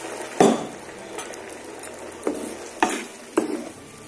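A wooden spatula stirring a watery tomato and drumstick curry in a non-stick frying pan, knocking against the pan about five times, the loudest about half a second in, over a steady low sizzle from the hot curry.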